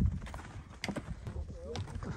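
Footsteps of a hiker climbing snow-covered metal stairs: several sharp knocks of boots on the steps. A low rumble of wind on the microphone at the very start.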